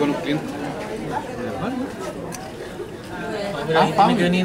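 Indistinct chatter of several people talking at once in a room, with a nearer voice growing louder near the end.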